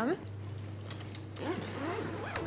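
Faint clicking and rasping of stacked plastic takeaway containers being handled, over a steady low hum.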